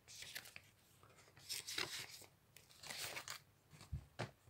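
Faint crackling and rustling in three short spells, close to the microphone.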